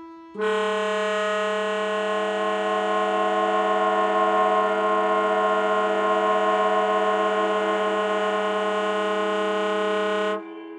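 Contemporary chamber music for alto saxophone, cello, accordion and electronics: a loud, dense chord held steady, entering sharply about half a second in and cutting off sharply at the end, over a softer wavering tone that carries on beneath it.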